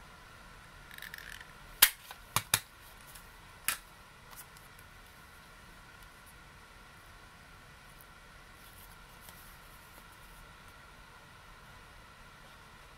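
Handheld thumb-notch paper punch snapping shut as it cuts a half-circle notch in a cardstock postcard: one sharp click about two seconds in, followed by two lighter clicks close together and another a second later.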